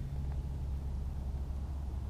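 2004 Ford Crown Victoria Police Interceptor's 4.6-litre modular V8 idling with a steady low hum.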